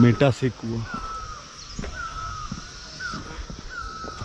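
A bird calling repeatedly outdoors, a short, slightly falling whistled note about once a second, with a brief human voice at the start.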